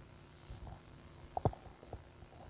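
Mostly quiet, with a few faint knocks from a handheld microphone being held and handled, the loudest a close pair about a second and a half in.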